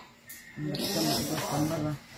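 A man's voice making one long, low drawn-out sound with a breathy hiss, starting about half a second in and stopping just before the end.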